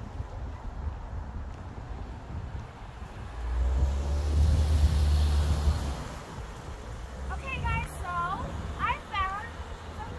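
A low rumble swells for a couple of seconds mid-way, then a high-pitched voice calls out in several short, bending cries near the end.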